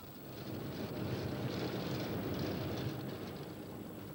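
Longwall coal shearer running and cutting at the coal face: a steady mechanical noise that swells in the middle and eases off toward the end.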